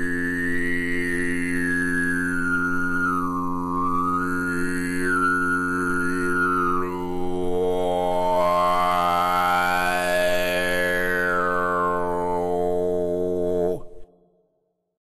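A deep, sustained drone held on one low pitch, its tone sweeping slowly up and down in vowel-like waves, like a chanted or throat-sung drone. It cuts off suddenly just before the end.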